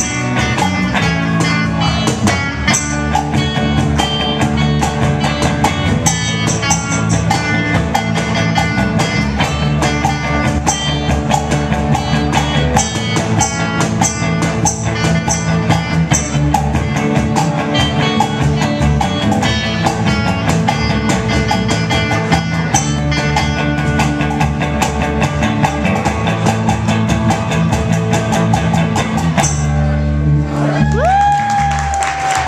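Live amplified rock band playing: electric guitars, electric bass and a drum kit, with steady regular drum beats throughout.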